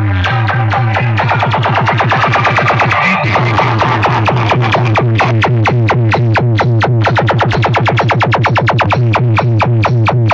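Electronic dance music blasting from a large stack of horn loudspeakers on a sound rig, with a fast, driving beat and heavy bass. There is a brief break in the pattern about three seconds in.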